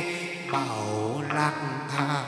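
Chầu văn ritual singing: a voice drawing out one long note with a wavering pitch over steady instrumental accompaniment.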